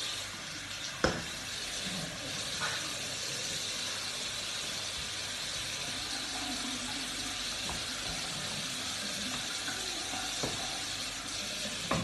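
Tap water running steadily into a bathroom sink, with a sharp knock about a second in.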